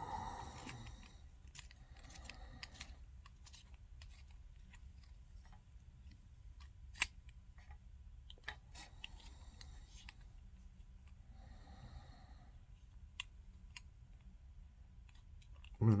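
Hand work on a brass rifle case with a small case-prep tool: scattered light clicks and faint scraping of metal on brass, with one sharper click about seven seconds in.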